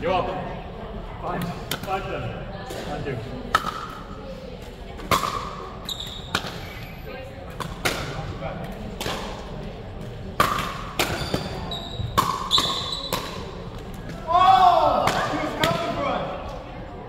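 Paddles striking a pickleball in a rally, sharp pops about once a second, echoing in a gym hall. Near the end a player's voice calls out loudly.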